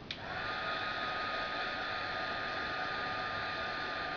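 Handheld craft heat gun switched on with a click, its motor quickly spinning up to a steady whine over a constant rush of hot air, blowing onto a thick acetate flower to soften it.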